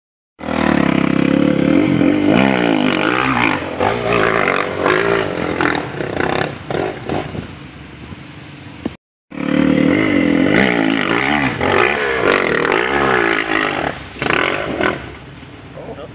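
Dirt bike engine revving hard on a steep hill climb, its pitch swinging up and down with the throttle. It is heard in two stretches, broken by a short gap about nine seconds in.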